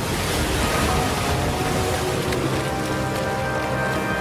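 Cartoon sound effect of a large torrent of rushing water, a steady dense roar of water noise, with background music underneath.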